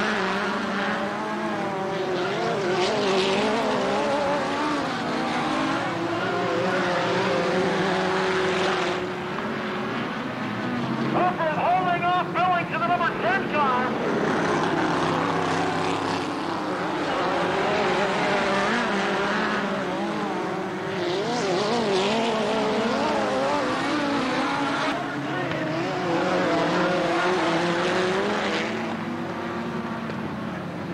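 Midget race car engines running at racing speed on a dirt oval, their pitch rising and falling as the cars accelerate and back off, with louder stretches every few seconds as cars come past.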